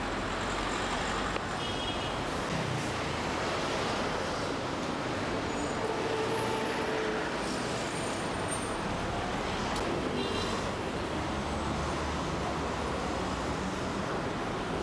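Steady street traffic noise around a city bus standing at a stop, with its engine running and passengers boarding.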